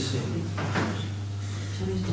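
A steady low hum runs under the room sound, with one short rustle or knock a little over half a second in.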